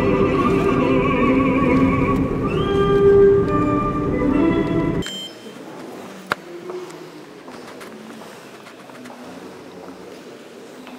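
Classical orchestral music from a radio over the low rumble of a moving car. Both cut off abruptly about halfway through, leaving quiet room tone with a single sharp click.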